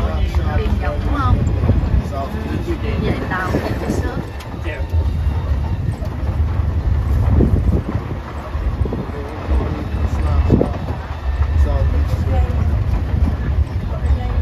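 Steady low rumble of a moving open-air shuttle tram, with wind on the microphone and the voices of passengers talking.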